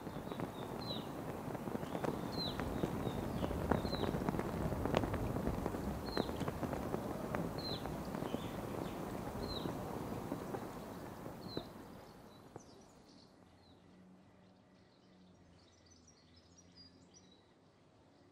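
Outdoor wind noise with a few sharp snaps, and a bird repeating a short, falling chirp about every second and a half. About twelve seconds in the wind dies away, leaving only faint bird twittering.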